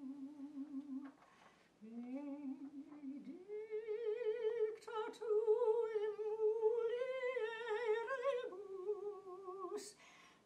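A woman's solo voice singing a slow melody without accompaniment. She holds long notes with a wavering vibrato, breaks off briefly about a second in, then sustains a higher note through the middle of the phrase.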